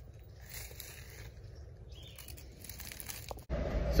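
Faint outdoor background with a few light crackles of dry leaf litter. About three and a half seconds in it cuts abruptly to the steady low hum of a vehicle's cabin.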